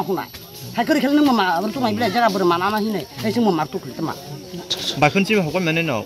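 A woman's voice crying aloud, in rising and falling wailing phrases broken by short pauses.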